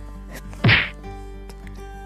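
A single short whack, about two-thirds of a second in.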